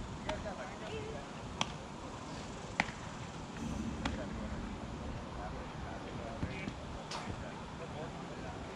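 Open ballfield ambience: faint distant voices over a steady low background, broken by several sharp clicks or knocks. The two loudest clicks come about a second and a half in and just under three seconds in.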